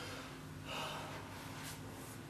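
A man's short, sharp breath about half a second in, heard as a brief burst of air over a low steady room hum.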